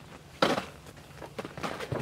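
Faint scuffs and knocks of a person climbing out of a pickup truck's cab with parts in hand, with one sharper knock about half a second in.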